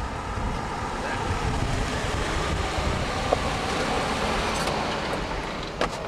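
A car driving slowly across an asphalt parking lot: steady engine and tyre noise, with a short click near the end.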